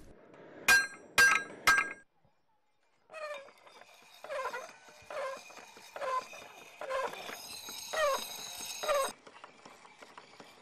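Forging hammer striking iron on an anvil three times in quick succession, each blow ringing, as the metal is beaten to a point. After a brief gap, a dog barks repeatedly, about once a second.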